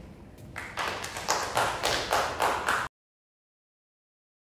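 Small audience clapping, an uneven patter of claps starting about half a second in. It cuts off abruptly near the end, leaving silence.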